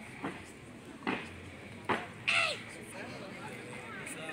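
Cadet drill squad on parade: a few sharp, separate stamps about a second apart, and a short shouted drill command a little past the middle.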